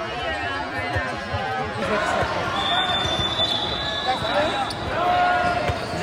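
Large gym with people talking over one another and basketballs bouncing on a hardwood court, a few dull bounces spread through. A brief high steady tone sounds about two and a half seconds in.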